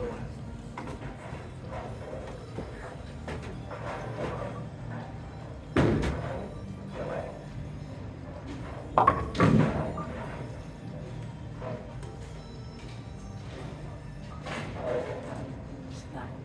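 Bowling alley din: background music over a steady low hum, with two loud crashes of a bowling ball striking pins, one about six seconds in and a longer clatter about nine seconds in.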